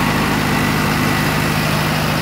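Mahindra Arjun 555 DI tractor's diesel engine running steadily while the tractor is driven in third gear of its modified four-speed gearbox.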